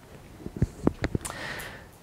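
A few soft, low thumps, as of footsteps or handling, then a short sniff near the end.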